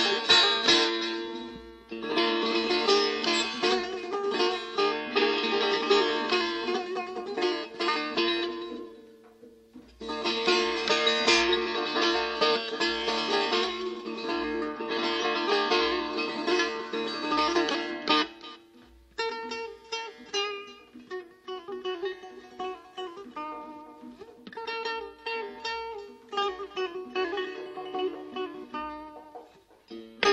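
Setar playing Persian classical music in Bayat-e Esfahan: quick runs of plucked notes. They break off briefly about nine and eighteen seconds in, then continue as sparser, more separated notes.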